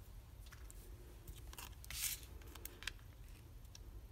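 Faint rustles and small clicks of cardstock being handled: backing peeled off foam adhesive dimensionals and a stamped paper panel pressed down onto a card, the clearest rustle about two seconds in.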